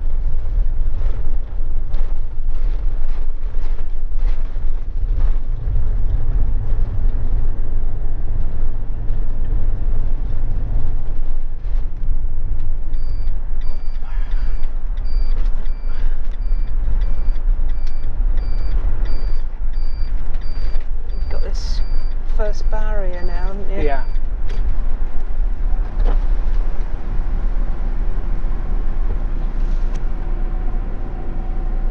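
Steady road and engine rumble inside a moving motorhome's cab. In the middle, a high electronic beep repeats about once a second for around ten seconds. Near the end a steady hum sets in.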